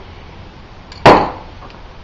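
A single sharp metallic clank about a second in, with a short ringing decay, as an aerosol spray can of wheel paint is set down on a hard surface.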